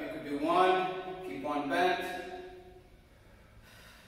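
A man's voice speaking for about two seconds, then near quiet.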